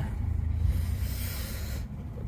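Low steady rumble of a coach engine heard from inside the bus cabin, with a hiss lasting about a second in the middle.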